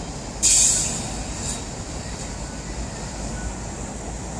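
Steady low rumble of city traffic, with a sudden sharp hiss of air about half a second in that fades within half a second: a heavy vehicle's air brake releasing. A fainter hiss follows about a second later.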